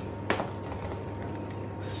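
Wooden spoon stirring flaked salt cod into thick mashed potato in a stainless steel pot: soft stirring with one sharp knock of the spoon against the pot about a third of a second in, over a low steady hum.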